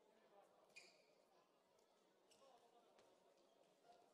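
Near silence: faint sports-hall ambience, with two brief faint sounds from the court about a second in and again past the two-second mark.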